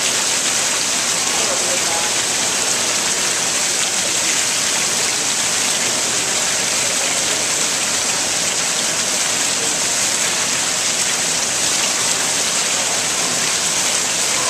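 Water from a tiered stone fountain pouring off the rim of its bowl in a continuous curtain and splashing into the basin below: a loud, steady, bright rush with no break.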